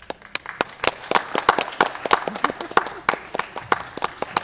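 Audience applause breaking out suddenly, with a few loud claps close by standing out sharply above the denser clapping of the rest of the crowd.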